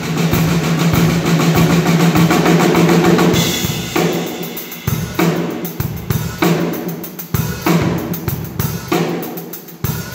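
Acoustic drum kit being played: a dense run of fast strokes for the first three seconds or so, then a sparser beat of separate hits, each ringing out briefly.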